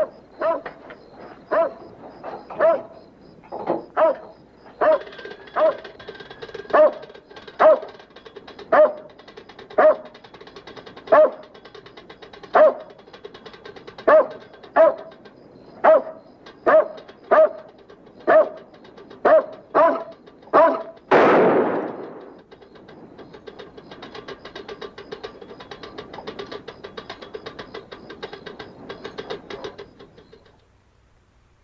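A dog barking over and over, about once a second, for some twenty seconds. Then a single loud blast that wounds the dog, after which the barking stops.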